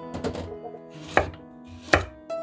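Chef's knife slicing a carrot on a wooden cutting board: two sharp chops, one about a second in and one near the end, with a softer rustle early on. Soft background music runs underneath.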